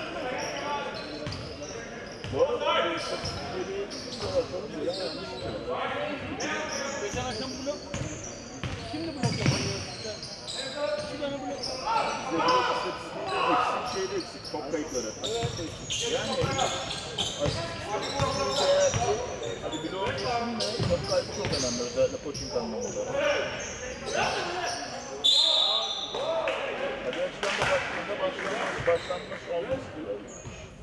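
Basketball game sounds in a large gym: a ball bouncing on the hardwood court again and again, with players' voices calling out. A short high tone sounds once about 25 seconds in.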